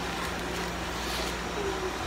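Steady low mechanical hum of room background noise, with nothing sudden standing out.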